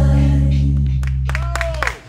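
A live band and singers hold the final chord of a song, and it dies away over the second half. A few claps and a voice come in near the end.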